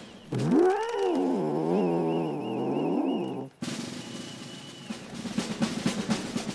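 Cartoon ant character's wordless voice: one long pitched grumbling call that swoops up and down for about three seconds and cuts off suddenly, followed by quieter rapid ticking.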